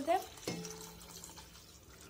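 Water poured from a glass jar into a small glass fish tank, splashing into the water already in it and fading steadily. About half a second in there is a short thud with a brief low ringing tone.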